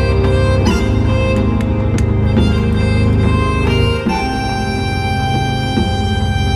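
Synthesizer music from a Nexus 3 preset played live on a keyboard, chords and a lead over a drum beat. About four seconds in the drums fall away and held chords carry on.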